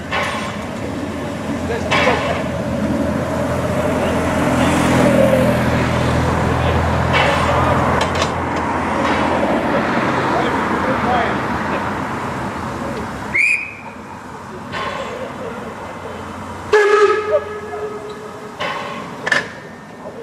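Narrow-gauge steam locomotive running slowly past, a steady loud hiss and rumble of steam and running gear that eases off about two-thirds of the way through. Near the end comes a short toot of its steam whistle, the loudest moment.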